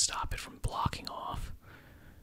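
A man whispering close to the microphone, starting with a sharp breath or mouth sound and trailing off about a second and a half in.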